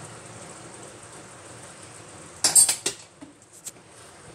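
Kitchen utensils clinking against a cooking pan: a quick cluster of sharp clatters about two and a half seconds in, then a few lighter clicks.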